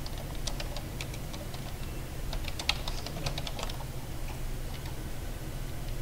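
Typing on a computer keyboard: a run of quick, irregular key clicks through the first half, thinning out later, over a steady low hum.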